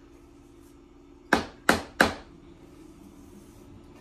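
A spatula knocking three times in quick succession against a stainless steel mixing bowl, sharp ringing knocks about a third of a second apart, as cake batter is being scraped out of the bowl.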